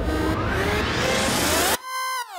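Electronic background music building up with a rising sweep. About three-quarters of the way in, the music cuts to a single held electronic tone.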